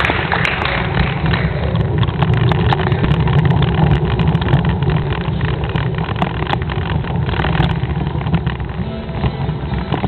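Steady low rumble with scattered clicks and rattles from a camera travelling over cobblestones. A hiss of crowd noise from the arched passage fades away in the first couple of seconds.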